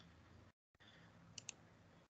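Near silence with faint room noise and two quick, soft computer-mouse clicks about a second and a half in.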